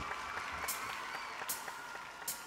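Studio audience applauding faintly, slowly dying away, with a few sharp high ticks.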